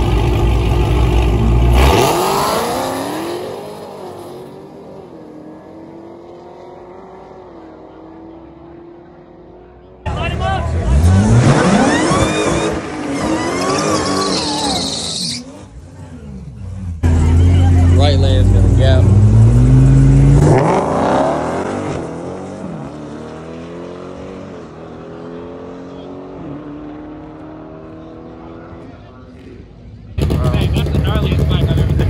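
Drag racing cars at full throttle in three short bursts: each time a loud engine climbs in pitch as the car accelerates hard, then fades as it pulls away down the strip, with some tire squeal. The bursts start and stop abruptly.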